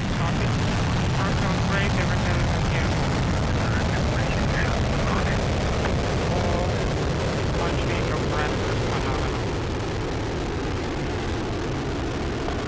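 Soyuz rocket's liquid-fuelled first stage, four strap-on boosters and core engine, firing at full thrust as it climbs after liftoff: a steady, deep rumble. Faint voices come through over it.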